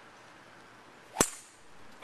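An iron golf club striking the ball once, a single sharp click about a second in.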